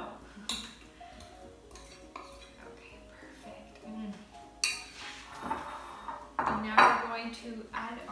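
A metal spoon clinking and scraping against a small white ceramic bowl as cubed avocado is scooped out into a salad bowl. There are a few sharp knocks, with the loudest clatter a little before the end.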